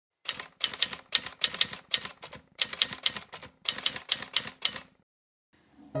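Rapid clacking of keys being typed, in quick bursts of several strokes each, stopping about a second before the end.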